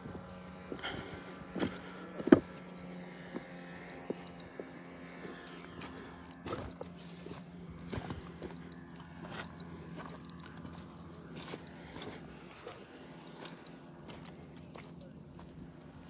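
Footsteps on loose stones and rocky ground, with scattered scuffs and knocks, the sharpest about two seconds in, over a faint steady low hum.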